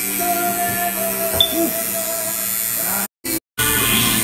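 Background music playing over the steady buzz of a tattoo machine working on skin. The sound drops out completely twice, briefly, about three seconds in.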